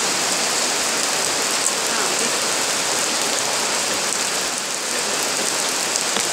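Steady rain, heard from beneath a tent canopy.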